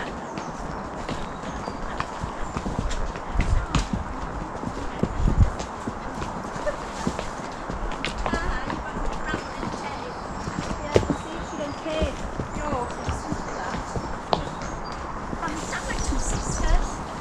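Horse hooves clip-clopping at a walk on a hard, dry earth woodland track, an irregular run of short ticks. Low rumbles come on the microphone about four and five seconds in.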